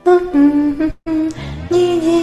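A woman humming a tune in held, stepped notes. She breaks off for a moment about a second in, then goes on.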